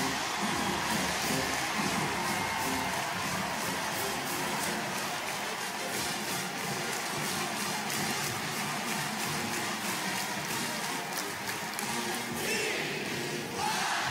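Stadium crowd noise with a marching band playing to a steady drumbeat after a touchdown.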